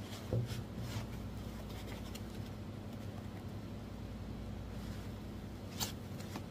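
Jars being handled in a foam packing insert: faint rubbing of jar against foam, with a sharp click shortly before the end, over a steady low hum.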